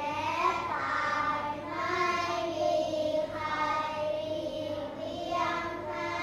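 A class of young children reading Thai text aloud in unison, in the slow, drawn-out sing-song rhythm of group recitation.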